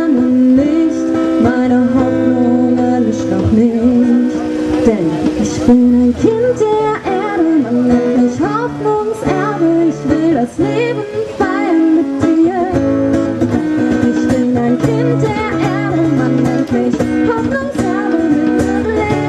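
A woman singing a song while strumming an acoustic guitar.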